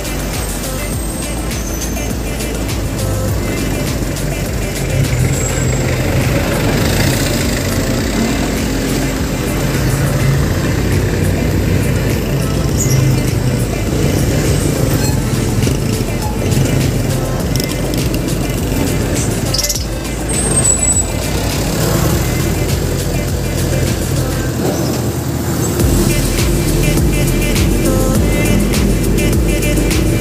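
Steady street traffic and vehicle rumble while riding through town, with background music laid over it.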